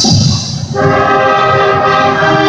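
High school marching band of brass, saxophones and clarinets playing a slow alma mater in held chords. There is a brief thinning just after the start, then a new full chord comes in just under a second in and is held steadily.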